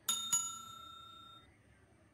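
Notification-bell sound effect of a YouTube subscribe-button animation: a bright bell chime struck twice in quick succession, ringing out and fading over about a second and a half.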